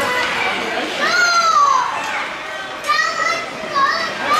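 High-pitched children's shouting and cheering during a scramble in front of the net at a ringette game. One long falling yell comes about a second in, with shorter shouts near the end.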